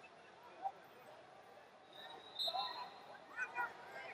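Scattered distant voices echoing in a large arena hall, with a brief high steady tone about halfway through.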